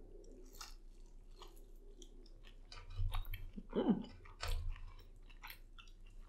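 Close-miked chewing of a Flaming Hot fried pickle, its crumb coating crunching in many small crisp clicks, with a brief hum from the eater about four seconds in.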